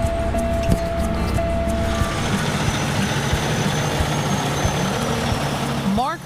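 Peterbilt semi truck's diesel engine running, its noise swelling into a loud, even rush about two seconds in, with background music underneath. A steady high tone sounds for the first two seconds, then stops.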